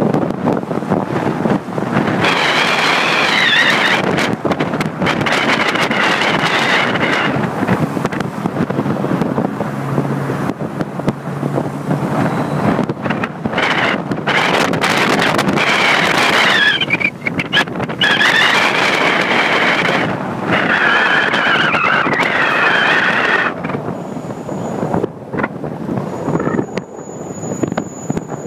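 Wind buffeting the microphone over the road noise of a car driving in traffic, with a wavering high whistle that comes and goes.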